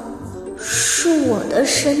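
A cat meowing: one drawn-out meow that rises and then falls in pitch, from about half a second in to near the end, over soft background music.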